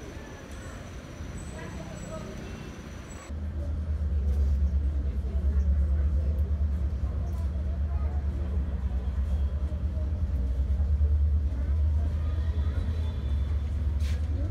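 Open railway platform ambience with a faint steady high whine, then, from about three seconds in, the inside of a moving commuter train: a loud, steady low running rumble from the wheels and traction.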